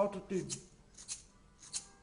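A man's singing voice finishing a run of sung "pa pa pa" syllables, sliding down in pitch, then a pause holding a few faint short rattling clicks.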